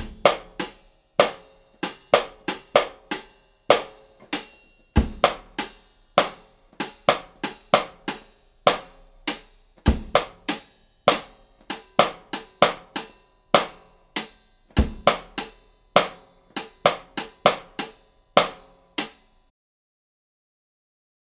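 Drum kit (Taye GoKit with Aquarian snare head and UFIP hi-hat) playing a steady practice groove. Hi-hat keeps time over bass drum, and the snare lands on syncopated sixteenths: the second of beat one, the fourth of beat two and the second of beat three. A heavier low hit comes about every five seconds, and the playing stops shortly before the end.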